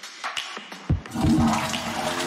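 A toilet flushing: a sudden rush of water that fades out about a second in, then music starts.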